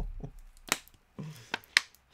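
A plastic water bottle being handled: a few sharp, separate plastic clicks and crackles, the loudest a little under a second in and again near the end.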